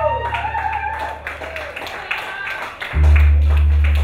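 A live rock band plays bass guitar and drums. Over it, a wavering high sliding line runs through the first second or so. About three seconds in, a loud held low bass note comes in.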